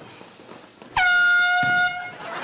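Basketball gym scoreboard buzzer sounding once, starting about a second in: a loud, steady horn tone lasting just under a second, with a dull thump near its end.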